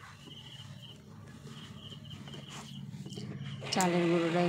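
A faint low hum with a pulsing high chirp, then about three and a half seconds in a Preethi electric mixer grinder starts: its motor runs with a loud, steady whine as it grinds soaked rice into flour.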